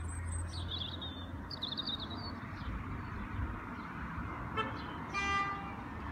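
Outdoor street ambience: a steady low traffic rumble, small birds chirping during the first couple of seconds, and a short horn-like toot about five seconds in.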